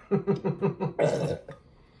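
A man drinking from a large glass bottle of King Cobra malt liquor in long gulps: a run of about six quick glugs, then a louder, rough, belch-like sound that stops about a second and a half in.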